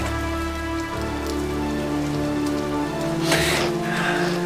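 Soft background score holding sustained chords over a steady hiss, with a short breathy sound a little after three seconds in.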